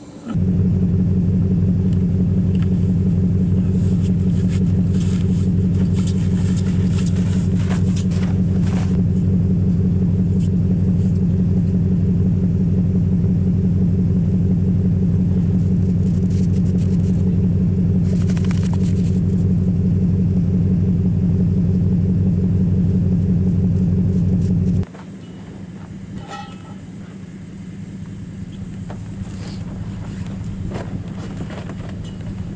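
Vehicle engine idling steadily at close range. It cuts off abruptly about 25 seconds in, leaving a much quieter low hum with wind.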